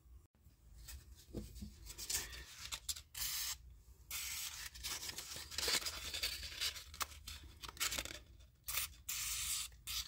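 WD-40 aerosol can spraying through its straw onto a strip of emery cloth in several short hissing bursts, with rustling of the cloth being handled in between.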